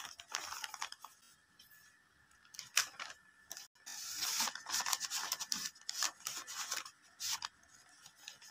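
Sheets of paper rustling and crinkling in short, irregular bursts with small crisp clicks, as a homemade paper blind bag is handled: a paper cutout slid against it and its top pinched and folded.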